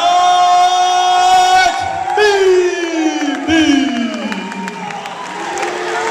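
A ring announcer draws out the winner's name in one long held call that then slides down in pitch over about three seconds, with a crowd cheering.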